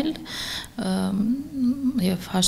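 A woman speaking Armenian, her voice holding one level pitch for a moment about a second in, like a drawn-out hesitation sound.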